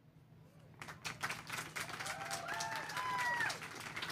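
Audience applauding. The clapping starts about a second in and grows louder, with a brief call from someone in the crowd midway.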